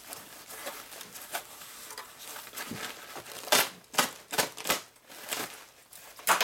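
Packing material rustling and crinkling as it is handled and pulled back from an aluminium engine case, with a handful of sharper clicks a little past the middle.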